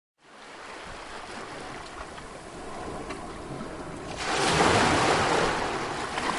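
Waves and wind: a steady rushing noise that fades in and becomes abruptly louder about four seconds in.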